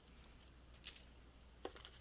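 Faint handling of green plastic drawing templates on a desk: one light, sharp tap about a second in and a fainter one near the end, otherwise quiet.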